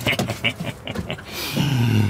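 A man's voice starting a laugh or chuckle in the second half, after a few soft clicks.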